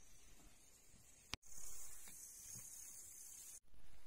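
Quiet outdoor ambience with a steady high-pitched hiss. The hiss comes in abruptly and loudly about a second and a half in, eases off a little, and cuts off abruptly shortly before the end.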